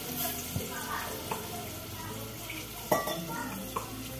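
Ground green masala paste poured into hot oil in a steel pot, sizzling, while a steel ladle stirs and clinks against the pot a few times, the loudest clink about three seconds in.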